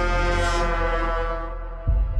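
Horror-trailer title sound design: one long, low horn-like tone with many overtones that fades over the second half. It is cut off near the end by a sudden deep boom.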